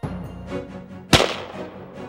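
A single rifle shot about a second in, fired from a rest to check that the rifle is still sighted in, with a short ringing tail.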